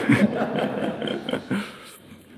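Audience laughter, a broad wash of many people laughing together that fades away after about a second and a half.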